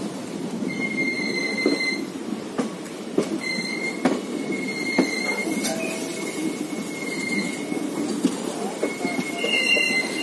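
Passenger train's steel wheels squealing as it rounds a curve, a high-pitched squeal that comes and goes in several stretches over a steady rumble. Occasional sharp clacks of wheels passing over rail joints punctuate it. Heard from aboard the train.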